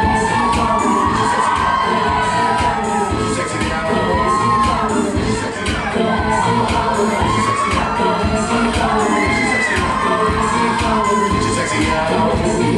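Audience cheering and shouting over loud dance music with a steady beat.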